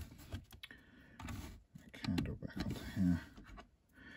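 Plastic LEGO bricks clicking and rattling as a built section is pressed onto the model and parts are handled, with several sharp clicks in the first second.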